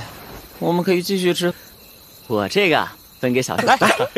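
Crickets chirping steadily as night-time background, heard through the gaps between short lines of Mandarin dialogue spoken by the animated characters.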